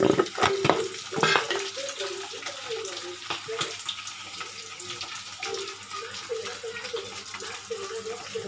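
Sliced onions frying in oil in a steel kadai, with a steady sizzle. A perforated steel spoon scrapes and clinks against the pan, and the clinks are sharpest in the first second or two.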